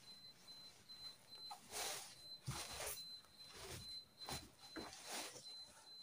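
Faint rustling of a sequined lace gown and its satin lining being handled and lifted, in several brief swishes.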